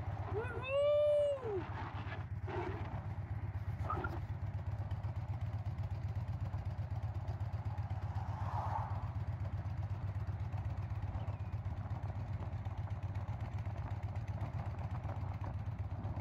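Harley-Davidson V-twin motorcycle engine running steadily at cruising speed, a low continuous drone. About a second in, a voice gives a brief high whoop that rises and falls in pitch.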